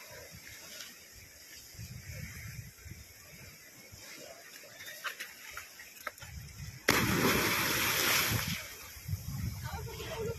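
A person jumping from a rock ledge into the sea: a sudden loud splash about seven seconds in that lasts a second or so and then dies away, over a low background of sea and wind.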